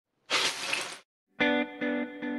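A short, loud crash of noise lasting under a second, then silence. About a second and a half in, distorted electric guitar intro music starts with strummed chords.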